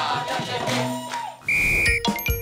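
The tail of a dikir barat group's sung phrase fades out over the first second. Then a single steady, high whistle blast sounds for about half a second near the end.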